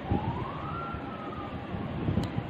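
A siren in the background: one wailing tone that rises over about a second and then falls slowly, over steady background hiss.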